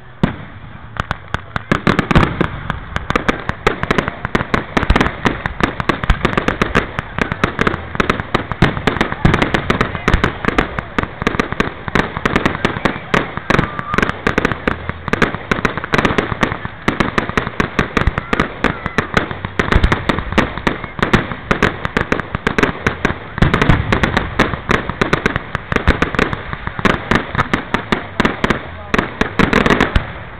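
Aerial fireworks going off in rapid succession: a dense run of bangs and crackles, many a second, starting about a second in, as shells launch and burst overhead.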